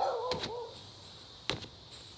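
Kickboxing strikes landing on a freestanding punching bag: sharp thuds, one just after the start and another about a second and a half in. A short voiced grunt or exclamation at the very start is the loudest sound.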